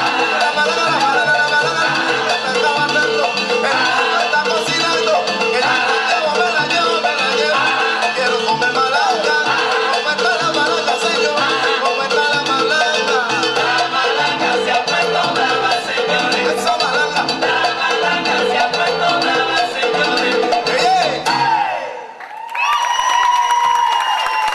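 Salsa music playing for a dance routine. Near the end it cuts out briefly, then comes back on a long held note.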